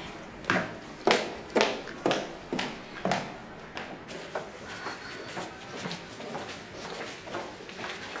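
Footsteps of hard-soled shoes on a tiled floor, about two sharp steps a second; the first half-dozen are loud, and the rest are fainter.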